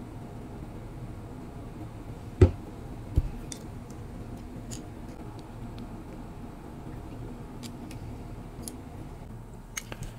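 Light clicks and taps from small metal parts being worked with needle-nose pliers on a bench mat. One sharper click comes about two and a half seconds in and another shortly after, with fainter ticks later, over a faint steady low hum.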